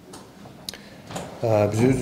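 A man's voice at a press-conference microphone pauses, then resumes speaking about one and a half seconds in. A single short click sounds during the pause.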